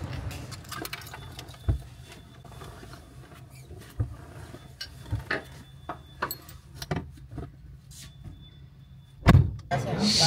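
Handling noises inside a car: scattered clicks, knocks and jingling keys over a steady low hum, with one loud thump near the end.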